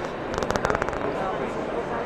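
A quick burst of rapid clicks, about a third of a second in and lasting well under a second, from the cables of a prototype Max Pro portable fitness machine being pulled out as the handles are raised.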